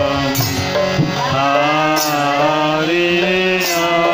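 A devotional kirtan with voices chanting and singing in long, gliding lines over a steady drone. Soft drum strokes run underneath, and a bright cymbal-like splash comes about every second and a half.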